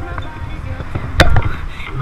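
Background music over a low rumble, with one sharp knock a little over a second in.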